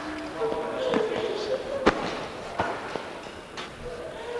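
Indistinct voices without clear words, with a few sharp knocks. The loudest knock comes about two seconds in.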